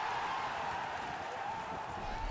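Steady crowd noise from spectators in a football stadium during match play.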